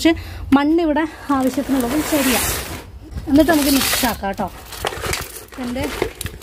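A woman speaking in short phrases, with bursts of rustling and scraping between them.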